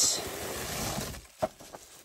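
Bubble-wrapped plastic bead storage tray sliding out of its cardboard box: a rustling scrape that fades over about a second, then a light knock as the tray is set down.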